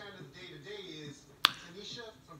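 Faint, low speech, then a single sharp snap about a second and a half in.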